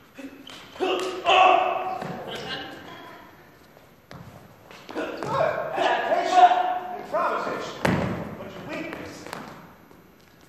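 Wordless shouts and grunts from people sparring, in two bursts, with thuds of strikes and footwork on a stage floor and a sharp thud nearly eight seconds in, echoing in a large hall.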